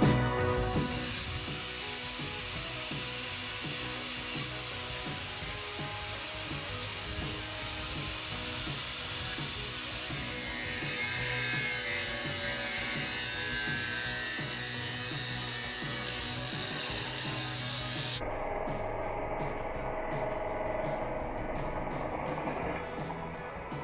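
Corded angle grinder running steadily against a wooden post, its disc grinding through metal embedded in the wood with a continuous high, hissing grind. Near the end the sound turns duller.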